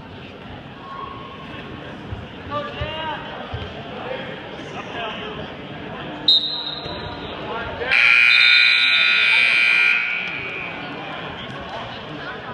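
Gymnasium scoreboard buzzer sounding once for about two seconds, in the middle of a wrestling match, marking the end of a period. A short, sharp high tone sounds a second or two before it, over the murmur of a crowd in a large hall.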